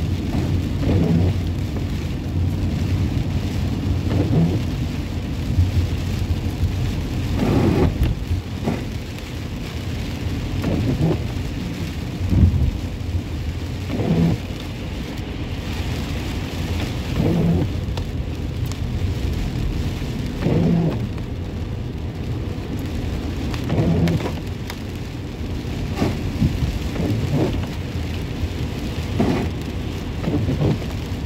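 Rain on a moving car, heard from inside the cabin: a steady patter on the glass and roof over a low road rumble. The windshield wipers sweep about every three seconds.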